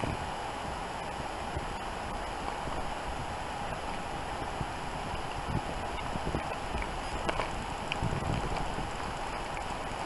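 Footsteps plunging through deep snow: uneven soft thuds and crunches from a dog and its walker, over a steady hiss.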